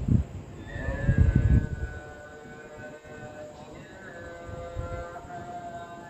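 A distant, amplified voice chanting in long held, wavering notes that carry across the rooftops. Low rumbling gusts hit the microphone at the start, around a second in, and again near the end.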